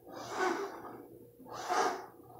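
Two audible breaths close to the microphone, one about half a second in and one near the end, with low room quiet between them.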